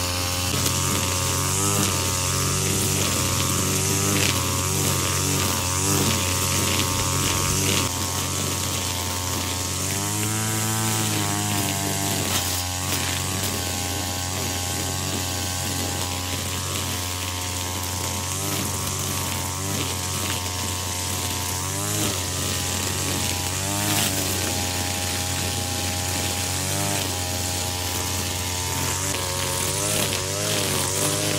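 Backpack brush cutter's small petrol engine running at high revs while its nylon-cord trimmer head cuts through tall grass. The engine speed rises and falls as the cutter works, with a clear dip and pick-up about ten seconds in, over a steady hiss of line whipping the grass.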